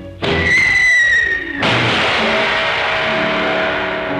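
Cartoon score sting: a sudden sharp start, then a high whistle-like tone held for just over a second, drooping slightly. It gives way to a shimmering, cymbal-like wash over sustained orchestral chords.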